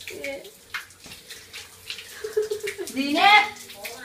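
A person's voice, unworded, in a small echoing room: a brief sound at the start, then a long drawn-out call that swells to its loudest about three seconds in.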